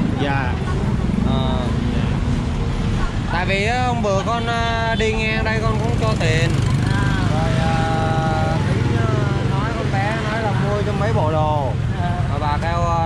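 A woman speaking over close street traffic, with a steady low hum of motorbike engines running throughout.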